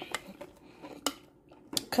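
Glass candle jar and its metal lid being handled: a few light clicks and taps of lid and glass, the sharpest about halfway through and a quick pair near the end.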